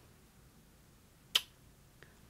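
A single short, sharp lip smack about a second and a half in, as lips pressed to the back of the hand pull away in a lipstick transfer test.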